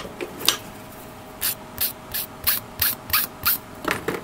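Hand sanding of a small plastic model-kit part: a couple of light clicks, then about eight short, even sanding strokes, roughly three a second, in the second half. The strokes are the leftover plastic being sanded down.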